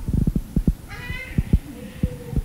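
A baby's brief high-pitched cry or squeal about a second in, among a series of low thumps and knocks.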